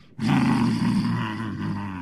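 A man's deep, held power-up yell: an anime fighter straining as he gathers his strength, kept on one pitch for nearly two seconds and slowly fading.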